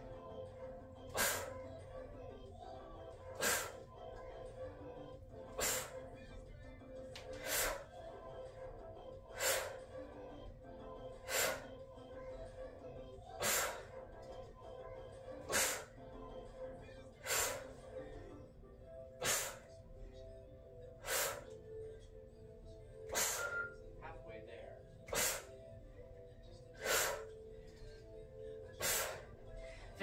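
Sharp, forceful exhalations, one every two seconds or so, fifteen in all, as a woman works through kettlebell repetitions, with faint music playing steadily underneath.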